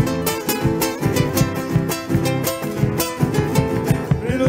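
Several acoustic guitars strummed together in a steady, brisk rhythm, playing an instrumental passage of an Argentine folk song with no singing.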